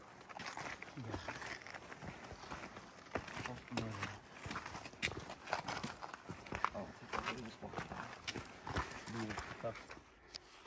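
Footsteps on a rocky trail with trekking-pole tips clicking irregularly on stone. Faint, indistinct voices come in now and then.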